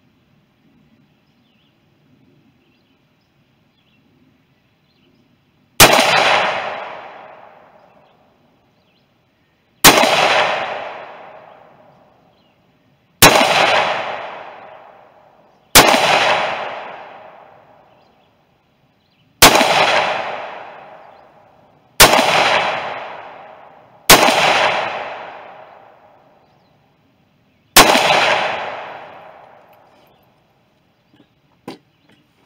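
Eight single shots from an AR-15-style rifle, fired slowly two to four seconds apart and starting about six seconds in. Each crack is followed by an echo that dies away over about two seconds.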